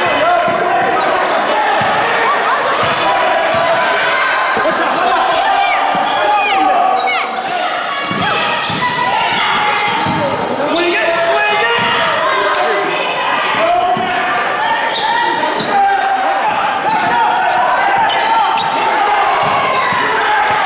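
Basketball game in a gymnasium: a basketball bouncing on the hardwood court under constant shouting and talking from players and spectators, echoing in the hall.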